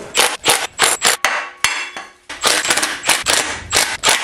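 Cordless impact driver hammering on rusty water pump and pulley bolts in a string of short bursts, with a brief pause near the middle, as the bolts are loosened.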